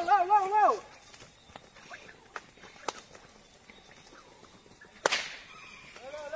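A man's chanted calls to the horse end in the first second. Then a horse-training whip cracks once, sudden and loud, about five seconds in, to urge the horse on.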